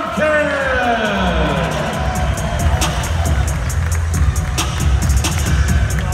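Arena PA announcer's drawn-out player-name call sliding down in pitch over the first couple of seconds, then loud arena music with a heavy bass, a crowd cheering underneath.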